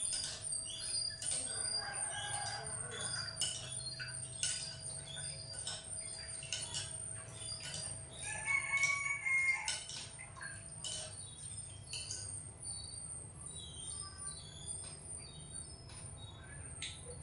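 A rooster crowing twice, once about two seconds in and again around the middle, among many short clicks.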